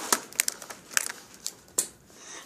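Handling noise close to the microphone: about eight sharp, irregular clicks and crackles as objects such as a marker are picked up and moved on the table.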